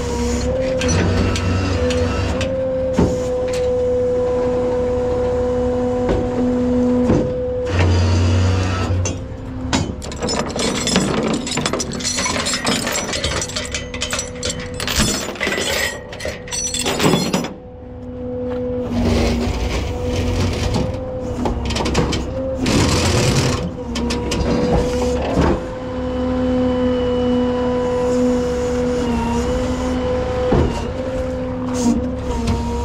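Peterbilt rollback tow truck running with a steady whine while its bed and winch are worked. The whine drops out for several seconds in the middle. Chains and metal clank against the steel deck.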